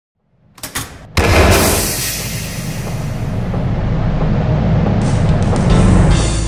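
Cinematic intro sting: a few quick hits, then a sudden loud boom just over a second in that carries on as a sustained low rumble.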